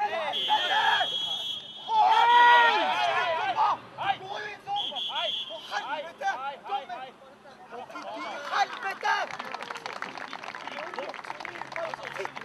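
A referee's whistle blown in a long steady blast just after the start, stopping play for a foul, then a loud shout and players' voices, and a second, shorter whistle blast about five seconds in.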